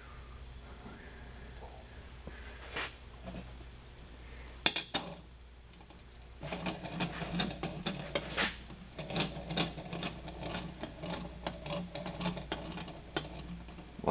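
A steel 3D-printer lead screw set down on a mirror's glass with a sharp clink just under five seconds in, then rolled back and forth across the glass from about six and a half seconds, a continuous rolling sound full of small clicks. Rolling it on the flat glass checks the screw for bends, and it rolls evenly.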